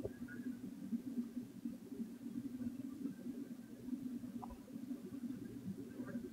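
Faint handling sounds of hand embroidery, fabric and thread being worked with a needle and thimble, over a low steady hum, with a couple of soft clicks.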